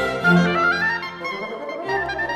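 Chamber orchestra with solo oboe and bassoon playing a Classical-era symphonie concertante. A woodwind melody climbs in steps over the strings, and the music softens briefly near the end.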